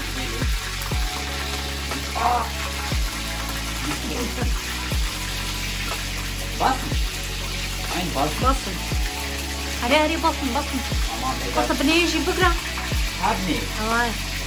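Breaded sticks sizzling as they fry in oil in a pan, over background music with a deep bass beat and falling bass notes.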